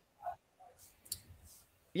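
A few faint, short clicks in an otherwise quiet pause in conversation, the sharpest about a second in.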